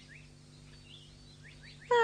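Faint, scattered bird chirps in a cartoon forest soundtrack. Near the end, a character's loud drawn-out vocal cry breaks in, falling in pitch.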